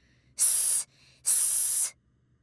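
Two drawn-out 'sss' hisses, each about half a second long, a little under a second apart: the cartoon letter S voicing its phonics sound.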